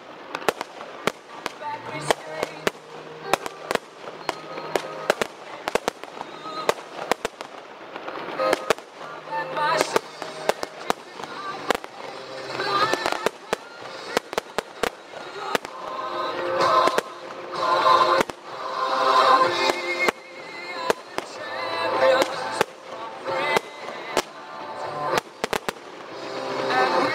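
Fireworks display: aerial shells bursting in frequent sharp bangs and crackles, with music playing loudly alongside. The bangs come thickest and loudest in the second half.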